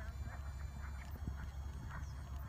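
Horses cantering on grass turf: a few dull, irregular hoofbeats over a steady low rumble.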